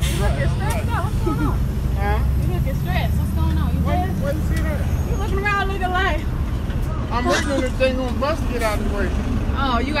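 Voices talking over the steady low rumble of an idling MARTA city bus at the curb.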